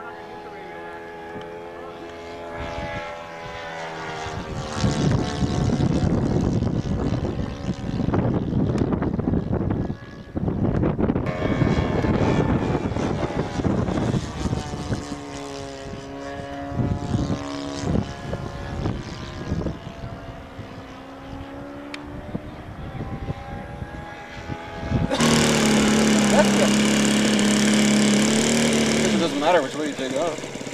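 Radio-controlled P-47 model's four-stroke engine in flight, its pitch rising and falling and its loudness swelling as the plane passes. About 25 seconds in, a louder, steady model-aircraft engine note takes over abruptly.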